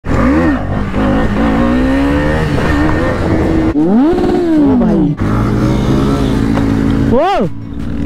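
Motorcycle engines revving and accelerating, cut together in short clips: the pitch climbs steadily under acceleration, with quick rev blips that rise and fall sharply, the sharpest near the end.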